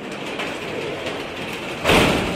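A noisy rumbling sound effect that swells up from silence and holds, then peaks in a sudden loud hit near the end, leading into the show's opening music.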